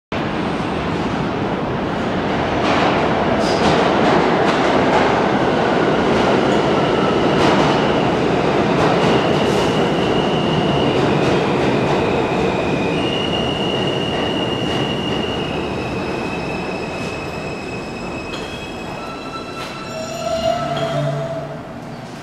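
R160 subway train running on the rails, with a steady rumble and long, high wheel squeals. It slows down toward the end, with a short louder squeal just before it stops.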